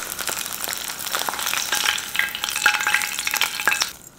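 Fried eggs sizzling and crackling in hot oil: a dense crackle full of small pops that starts and stops abruptly.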